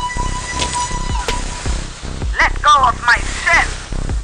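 Film soundtrack music with a synthetic sci-fi sound effect: a short rising tone that holds steady for about a second and a half, then a few short warbling, voice-like calls.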